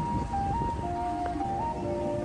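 Background music: a slow, simple melody of plain, held electronic tones stepping from note to note, over a low rumble of outdoor street and wind noise.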